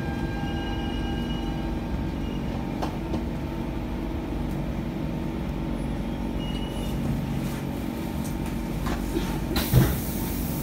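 Inside a C651 MRT train car pulling slowly along the platform: a steady low hum of the train's motors and air-conditioning with a few faint ticks. A louder knock comes just before the end.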